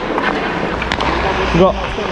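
Ice hockey skating noise from a camera worn by the player: a steady rushing of skates on ice with a low rumble, and a few sharp clicks in the first second.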